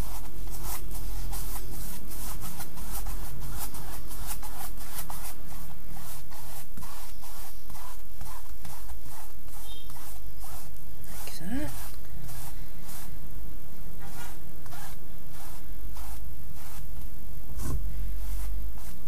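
Flat paintbrush spreading a coat of Mod Podge glue across a stretched canvas in quick back-and-forth strokes. The strokes come several a second for the first seven seconds or so, then grow sparser.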